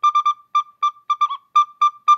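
Plastic recorder playing about ten short, tongued notes on a single pitch in a quick rhythm. It has a clean, gentle tone: the soft "nice sound" that beginners are meant to practise.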